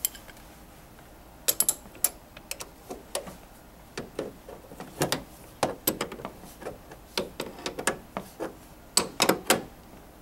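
Hand tools on a bolt: an allen wrench and an adjustable wrench clinking and clicking against a metal mounting bolt and frame as the bolt is turned in. The clicks come irregularly, starting about a second and a half in, with a close cluster near the end.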